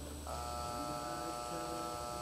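Arena time buzzer sounding one steady electric tone for about two seconds, starting a moment in: the signal that the cutting run's time is up.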